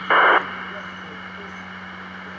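FM scanner receiving a 2-metre ham repeater: a short, loud burst of static just as the transmitting station unkeys (the squelch tail), then a steady hiss and hum while the repeater's carrier stays up.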